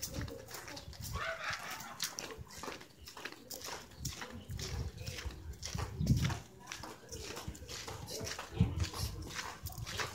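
Footsteps on a concrete lane, about two steps a second, with two short, louder low sounds about six and nine seconds in.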